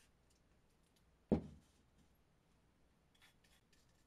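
A single dull thud about a second in as a metal aerosol can of gun oil is set down on the table, dying away quickly, followed by a few faint small clicks from handling the pistol frame near the end.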